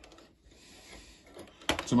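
Faint handling sounds of the thermostat probe and its wires being pushed down into the immersion element's thermostat pocket inside the plastic control body, small rubs and clicks under a quiet room, before speech resumes near the end.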